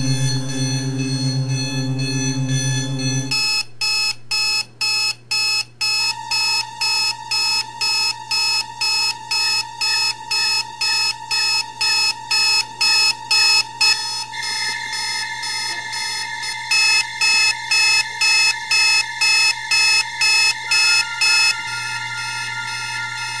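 Digital alarm clock beeping, about two beeps a second, starting about three seconds in after a low sustained electronic tone. Steady electronic tones run under the beeps and step up in pitch about halfway through.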